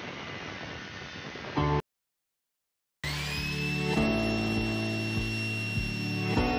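Angle grinder with a cutting disc grinding through the sheet steel of an amplifier cabinet, a steady noisy grind that ends abruptly a little under two seconds in. After about a second of silence an electric drill's motor whine rises and holds steady, over background music with a steady beat.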